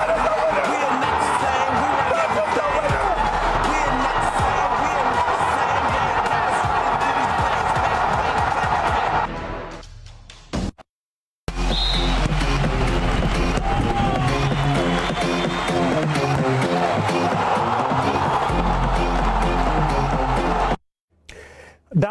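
Football stadium crowd noise mixed with music, fading out about ten seconds in. After a brief silence a music track with a steady, repeating bass line plays and stops about a second before the end.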